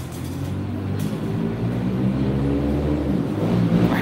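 A motor vehicle's engine running as it passes on the street: a low drone that slowly grows louder.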